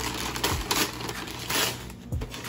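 Wrapping paper being torn off a gift box in several short rips and crinkles.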